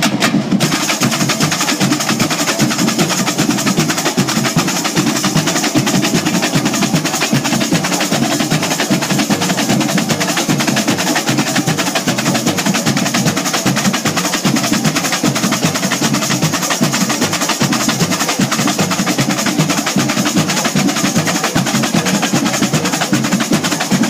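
Samba bateria playing a loud, dense, steady batucada groove: surdos, caixa snares, stick-struck tamborims and metal shakers all together, the high hissing layer filling out about half a second in.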